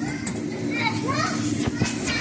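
Background voices of several children playing, short calls and chatter rising and falling, over a steady low hum.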